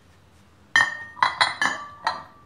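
White ceramic soup plates clinking as they are set down onto the plates beneath them: three sharp clinks in quick succession, each ringing briefly, starting about three-quarters of a second in.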